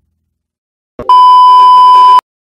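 Silence, then about a second in a sudden click followed by a loud, steady, high test-tone beep, the tone that goes with TV colour bars.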